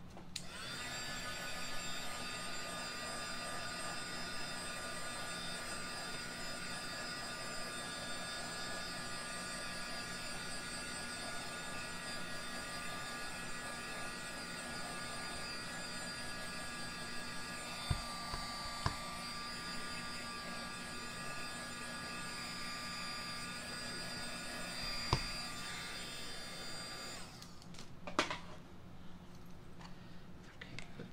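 Handheld craft heat gun running steadily, a motor whine over blowing air, as it dries a fresh coat of paint on a wooden frame; it switches off near the end.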